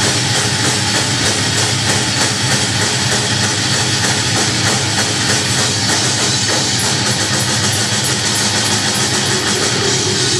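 Live rock band playing loud: electric guitars, bass guitar and drum kit together in a dense, unbroken wall of sound.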